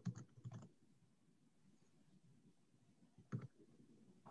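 Faint computer keyboard typing: a quick run of several keystrokes at the start, then a couple more taps a little after three seconds in.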